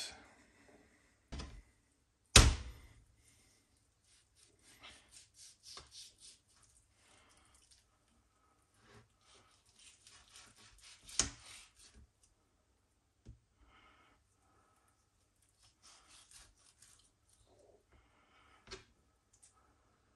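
Kitchen knife cutting raw wild boar meat on a plastic cutting board: soft scraping and slicing strokes broken by a few sharp knocks against the board, the loudest a little over two seconds in.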